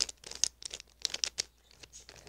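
Gold Rubik's Cube being turned by hand: a quick, irregular run of light clicks and rattles as its layers turn, the cube so loose that it rattles.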